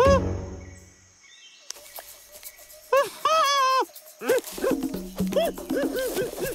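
A cartoon monkey character's wordless vocal calls over background music. There is a rising call right at the start and a brief hush. A longer wavering call comes about three seconds in, then a run of short hoots, two or three a second, near the end.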